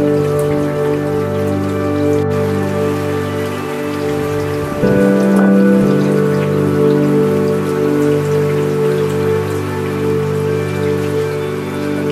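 Steady rain falling, under an ambient music track of sustained held chords; about five seconds in the chord changes and the music gets louder.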